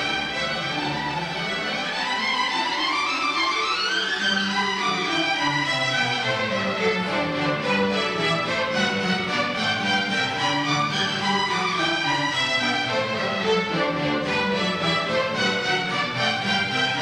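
A student string orchestra playing, violins and cellos bowing together. The upper strings climb in a rising run a couple of seconds in, then the lines fall away again.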